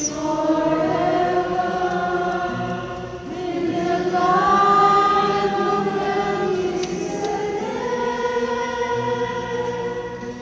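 A solo soprano singing a Catholic responsorial psalm, slow and chant-like with long held notes. She rises to the loudest and highest held note about four seconds in.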